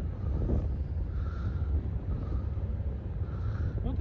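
Wind buffeting the microphone: a steady, gusting low rumble.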